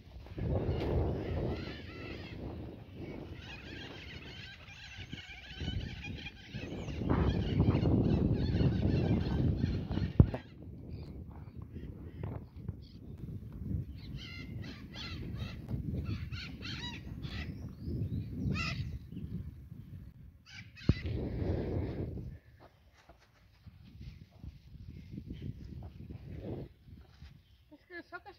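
Outdoor rural ambience: wind on the microphone for the first ten seconds or so, then quieter, with scattered short bird calls.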